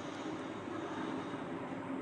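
Steady background hum and hiss with a faint low tone and no distinct events.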